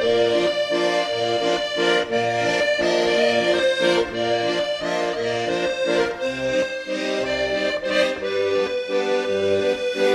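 Instrumental background music: a sustained melody over evenly repeating bass notes in a steady rhythm.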